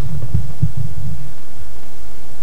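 Low rumbling handling noise on a camcorder's microphone as the camera is swung around, with a couple of soft thumps in the first second. About a second in, a faint steady hum takes over.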